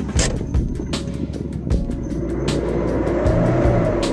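Isuzu D-Max diesel engine revved from idle, heard from inside the cab, its pitch rising through the second half as the revs climb and easing off near the end. The engine now picks up freely, its power back after a faulty speedometer sensor was swapped.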